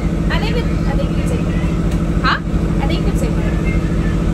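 Motorboat engine running steadily under way, an even, loud drone heard from inside the boat's cabin.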